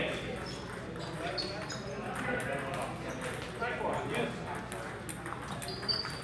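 Table tennis balls clicking off paddles and tables in quick, uneven strikes from several tables, over a murmur of people talking in a large hall.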